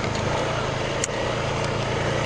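Honda Rubicon 520 ATV's single-cylinder engine running steadily at low speed, with a brief click about a second in.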